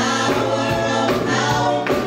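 Gospel praise team of five voices singing a welcome song together in harmony, held notes over a keyboard and drum accompaniment.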